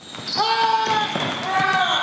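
Segment-transition stinger sound effect: a loud, noisy burst with a few voice-like calls that bend in pitch. A high, steady whistle-like tone joins about a second in.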